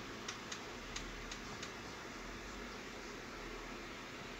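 Steady faint background hiss with five faint light clicks in the first second and a half.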